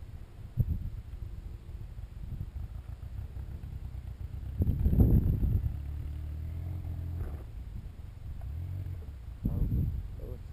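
Motor vehicle engine rumbling low, swelling into a louder surge about five seconds in, then holding a steady note for a couple of seconds before settling back.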